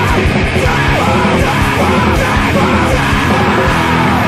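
Hardcore punk song played loud and dense, with a yelled vocal over the band.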